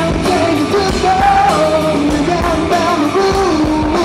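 Rock band playing live: electric bass, electric guitar and drum kit, with a sung melody stepping between held notes over them.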